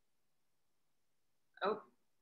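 Near silence, then a single short spoken "Oh" near the end.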